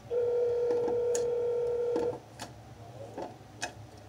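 Telephone ringback tone: one steady two-second ring heard through a phone's speaker while a call rings at the other end. A few short sharp clicks follow as slime is kneaded by hand.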